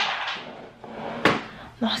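Two short knocks, one right at the start and another a little past a second in, with a faint breathy exhale between them from someone out of breath.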